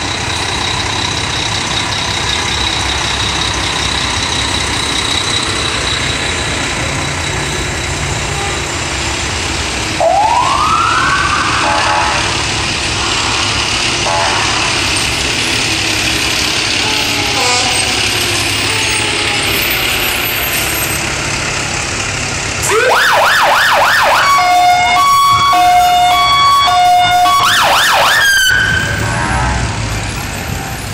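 Fire truck sirens sound over the steady running of truck engines. About a third of the way in, a siren winds up in a rising sweep. Near the end, a louder siren cuts in with rapid yelping sweeps, then alternates between two tones for about five seconds before stopping suddenly.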